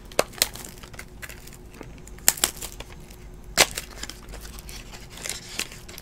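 Plastic trading-card pack wrapper crinkling in the hands, with a few sharp crackles scattered through, the loudest about three and a half seconds in.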